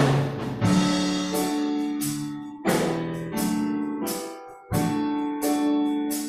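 Piano playing slow, sustained chords, each struck sharply and left to ring out before the next, about every second or two.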